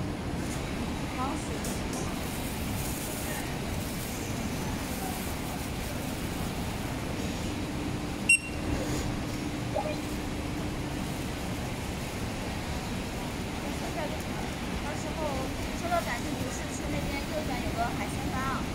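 Indistinct background chatter over a steady hum of store noise, with one short sharp click about eight seconds in.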